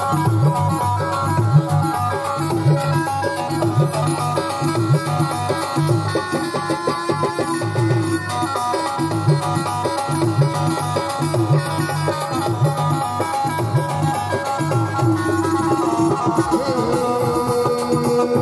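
Mewari Rajasthani folk dance music: a repeating drum rhythm under a held, wavering melody, played loudly and steadily.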